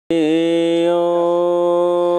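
A man chanting a long "Om" into a microphone. It starts suddenly with a slight dip in pitch, then holds steady on one note.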